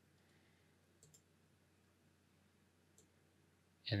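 Near silence broken by a few faint computer mouse clicks: two close together about a second in and one more near three seconds in.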